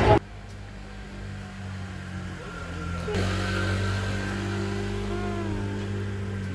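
A vehicle engine idling with a steady low hum, which grows louder about three seconds in. A few short gliding, voice-like sounds come near the end.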